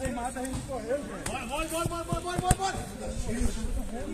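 Distant male voices calling out across a football pitch, with a few sharp knocks, the loudest about two and a half seconds in.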